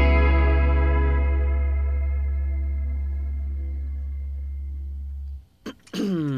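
The last chord of the song on electric guitar and bass guitar, ringing out with a strong low bass note and fading steadily. It cuts off sharply just before five and a half seconds in, followed by a couple of short clicks.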